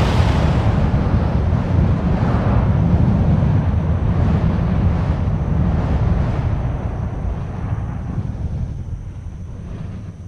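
A loud, steady low rumble with a hiss above it, fading away near the end.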